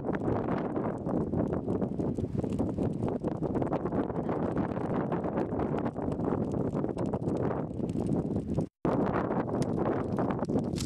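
Wind buffeting the microphone: a steady, loud rumbling noise with small crackles through it, cut off by a brief drop-out near the end.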